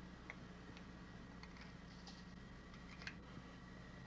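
Near silence: a faint steady hum of room tone or old film soundtrack, with a couple of faint small ticks.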